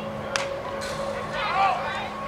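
A single sharp crack of a bat hitting a pitched baseball and fouling it back, about a third of a second in. Spectators and players call out just after it.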